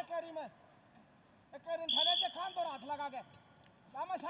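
Referee's whistle, one short high blast about two seconds in that then trails off, signalling the restart of the bout for the second period. Voices are talking around it.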